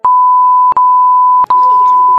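A loud, continuous electronic beep at one steady high pitch, broken by two brief clicks.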